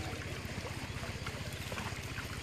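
A small engine running steadily with a fast, even low putter, over a faint wash of water.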